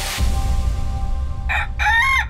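A rooster crowing as the sound of a logo intro. It begins about one and a half seconds in, after a short whoosh and over a low rumble.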